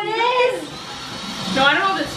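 A woman's drawn-out wordless exclamations, twice, with a quieter gap between them.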